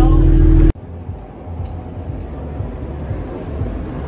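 City bus interior drone, a loud low engine hum with steady tones, cutting off abruptly under a second in. It gives way to a much quieter, even low rumble of city street background.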